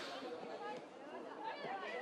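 Faint, distant voices calling and chattering on an outdoor football pitch during play, over a low open-air background.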